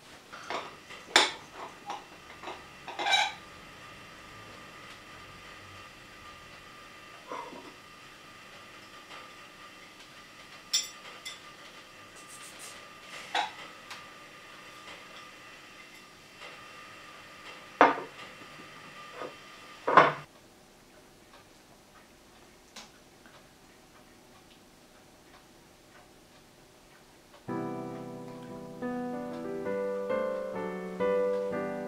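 Scattered clinks and knocks of a metal cake tin and a ceramic plate being handled while a baked tarte tatin is turned out, the loudest clanks about two-thirds of the way through. Soft piano music starts near the end.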